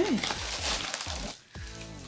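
Crinkling and rustling of plastic and paper packaging handled by hand while a parcel is unpacked, stopping abruptly about a second and a half in.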